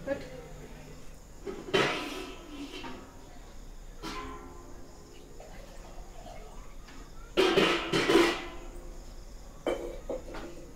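People talking in short stretches, loudest about two seconds in and again near eight seconds, over a steady low hum.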